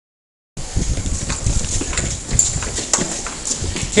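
Handling noise from a body-worn lapel camera as the wearer moves: clothing rubbing on the microphone with a low rumble and irregular knocks and thumps. It starts abruptly about half a second in, after dead silence.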